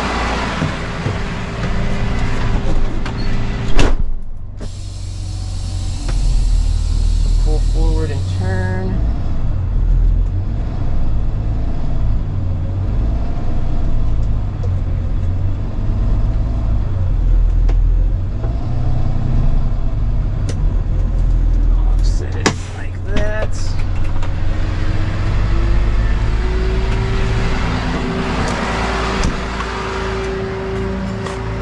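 Kenworth T270 rollback tow truck's diesel engine running as the truck is driven forward. The cab door slams shut about four seconds in, followed by a hiss of air for a few seconds, and there is a cluster of clicks and knocks around two-thirds of the way through.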